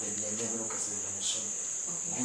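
Steady high-pitched buzz, the loudest sound, with a man's speech faint beneath it.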